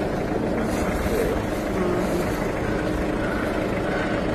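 Wind rumbling steadily on a phone's microphone outdoors, with faint voices behind it.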